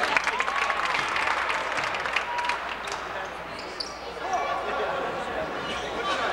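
Basketball game on a hardwood gym floor: a ball dribbling and sneakers squeaking as players run the court, with clicks thickest in the first second or so, over voices in the gym.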